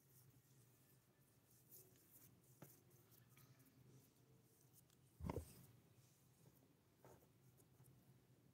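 Near silence: quiet room tone with a few faint clicks and one soft thump about five seconds in.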